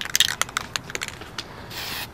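Aerosol spray paint can: a quick run of irregular rattling clicks, then a short hiss of spray starting near the end as painting begins.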